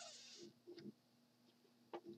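Near silence: room tone with a steady faint hum, a few faint soft blips about half a second in and one short faint tick near the end.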